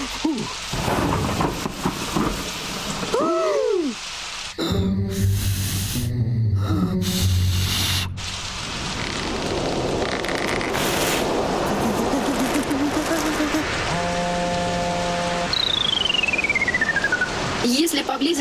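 Cartoon sound effects of heavy rain, with loud thunder crashes from about four and a half to eight seconds in. Near the end come a short held electronic tone and a long falling whistle.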